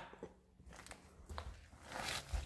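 Quiet room tone with a few faint scuffs and clicks, about a second in and again near the end.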